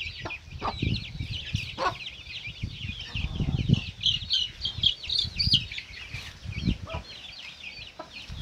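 A brood of about 27 Gigante Negro chicks peeping without pause: a dense chorus of short, high, falling cheeps. A few brief low sounds come in underneath.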